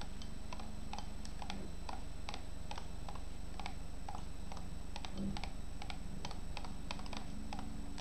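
Irregular run of light computer-mouse clicks, about three or four a second, placing pieces on an on-screen chess board.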